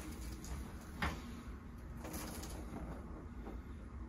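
Low steady room hum, with one short sharp click about a second in and a few fainter ticks after it.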